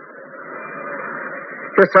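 A pause in a man's Urdu sermon, filled with faint background noise that swells a little. Near the end his voice resumes, sounding thin and narrow, like an old low-fidelity recording.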